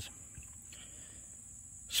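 Faint, steady, high-pitched chirring of insects in the grass.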